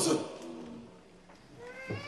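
A short, high-pitched meow-like call near the end, its pitch rising and then falling.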